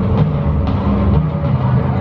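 Dramatic soundtrack music of a castle projection light show, played over loudspeakers, with heavy drum hits about half a second apart over a deep low bed.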